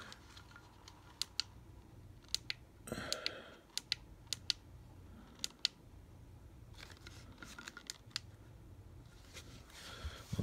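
Light, sharp plastic clicks and taps, scattered and often in pairs, from a solar motion-sensor LED light's plastic housing and hinged heads being handled and moved; a brief soft rustle comes about 3 seconds in.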